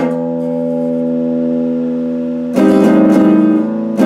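Electric guitar: a held chord rings steadily for about two and a half seconds, then fast strumming starts up again and stops just before the end.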